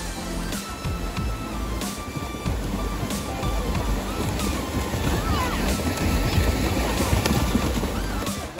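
Background music mixed with heavy splashing from many swimmers kicking their legs at the pool edge, the splashing growing louder in the middle.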